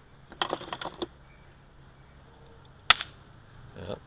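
A few light clicks, then one sharp snap about three seconds in: a spark from shorting across a 330 V capacitor charged for five seconds by pulses from resonant coils.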